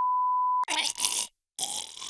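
A steady electronic beep tone that cuts off about two-thirds of a second in, followed by two short bursts of strained choking and grunting from a man being strangled.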